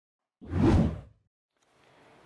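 A single whoosh sound effect for an animated logo intro, with a low rumble under it. It swells about half a second in and fades out within under a second.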